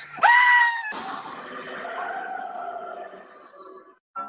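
A high, held scream cuts off about a second in. A loud crash follows and fades away over about three seconds.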